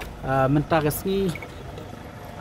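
A man speaking, over a steady low background rumble.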